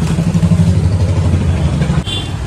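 A loud, steady low engine rumble, an engine idling with an even pulsing drone.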